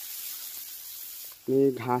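A soft, even hiss for about a second and a half, in a pause between phrases of a singing voice. The voice comes back in with long held, wavering notes about halfway through.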